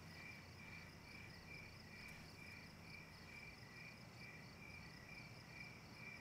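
Crickets chirping faintly in an even, repeating rhythm.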